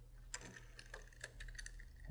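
Faint, scattered light clicks and taps of a metal deadbolt latch being slid into the bore in a door's edge.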